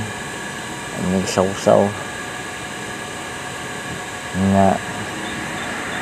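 A man's voice in two short untranscribed utterances, about a second in and again past the middle, over a steady background hiss.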